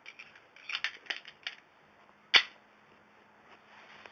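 A few quick clicks about a second in, then one sharp, louder click a little past halfway.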